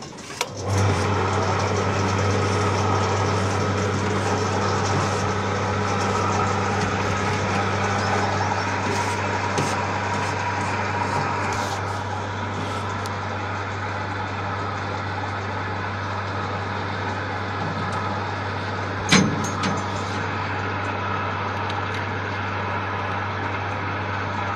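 Motor of a rooftop material-lifting mini crane starting about a second in and then running steadily with a low hum, a little quieter from about halfway. A single clank about 19 seconds in.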